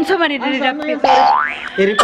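Playful vocal sounds from a woman, then about a second in a short whistle-like glide rising steeply in pitch.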